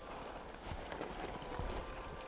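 Faint rustling and a few light, irregular knocks as people move quickly through forest undergrowth.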